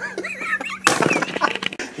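A sudden crash of something breaking, a little under a second in, followed by a spray of sharp crackles. Brief wavering voice sounds come just before it.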